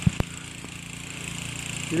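Steady outdoor background hum with a high hiss, broken by two short sharp clicks just after the start.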